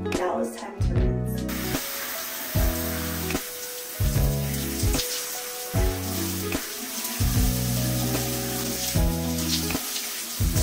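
Shower water spraying onto hair and skin, starting about a second and a half in, under background music with a steady beat.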